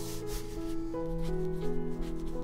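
Fountain pen nib scratching across notebook paper in handwriting strokes, the longest in the first half second, over background piano music.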